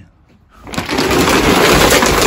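A woven plastic shopping bag being upended, rustling loudly as a heap of small objects (plastic bottles, a toy, cables, tape) tumbles out and clatters onto a wooden floor. The noise starts about half a second in and stays loud and dense.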